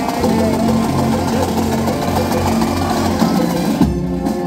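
Brass band playing in the street: sousaphones and euphoniums hold low sustained notes that change in steps, under the rest of the band.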